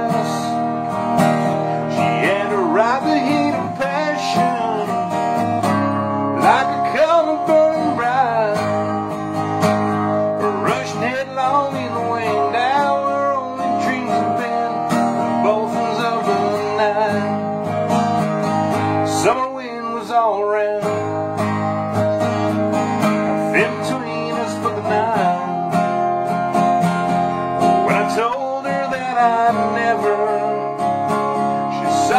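Cutaway acoustic guitar strummed steadily in a slow country ballad, with a man singing over it.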